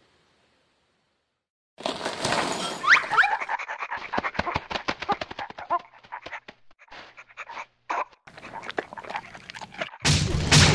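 Almost two seconds of near silence, then a dog panting in quick, even breaths, with a short rising whine early on. The panting thins to scattered breaths near the end.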